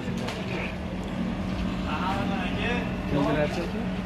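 A steady low mechanical hum, with a voice speaking faintly in the background about halfway through.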